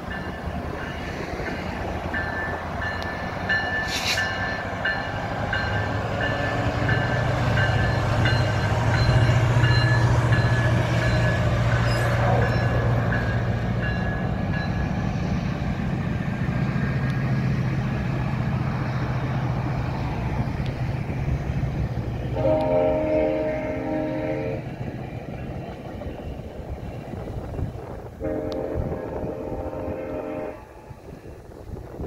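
GO Transit MPI MP40PH-3C diesel-electric locomotive hauling bilevel coaches past at speed: a low engine drone builds and peaks as the locomotive goes by, then fades into rolling-stock noise. Near the end a train horn sounds two blasts of about two seconds each.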